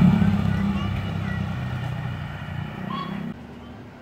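A motor vehicle's engine running close by, loudest at first and fading steadily as it moves away, then dropping off suddenly a little before the end. Faint voices can be heard behind it.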